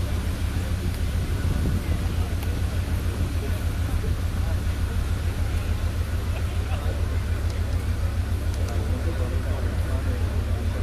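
Leopard 1A5 main battle tank's V10 multi-fuel diesel engine running, a deep low rumble with a fast, regular pulse that holds steady, heard at a distance over crowd chatter.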